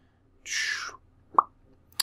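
A man's breath drawn in through the mouth, a hiss sliding down in pitch, followed by a short wet lip pop; a faint click near the end.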